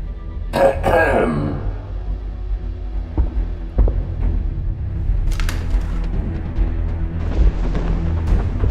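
Dark, tense film score with a low steady drone, a falling sweep about half a second in, and a few sharp hits scattered through.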